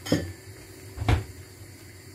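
Two knocks about a second apart: a wooden spoon knocking against a large stainless-steel pot of thick tomato sauce.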